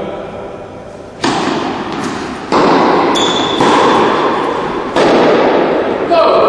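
Tennis ball struck by a racket four times, about one and a quarter seconds apart in a rally, each hit echoing in an indoor hall.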